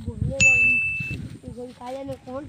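A single high, bell-like ding: one steady tone that comes in suddenly about half a second in and cuts off sharply under a second later, over voices.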